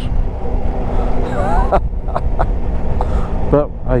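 Yamaha Tracer 9 GT's three-cylinder engine running steadily under way, heard from a helmet camera along with road and wind noise.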